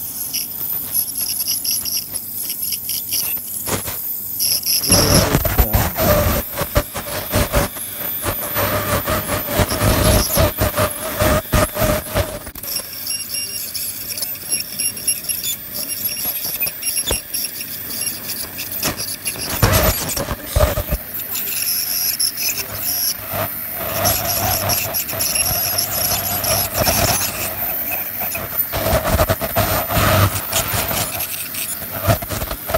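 Ultrasonic dental scaler whining at a steady high pitch, with its tip scraping and clicking against a poodle's teeth as it chips off tartar.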